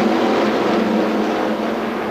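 A pack of restrictor-plated NASCAR Cup stock cars, V8s, running at full throttle just after the green flag: a steady, loud, dense engine drone from the whole field as it slowly gathers speed, easing slightly in level.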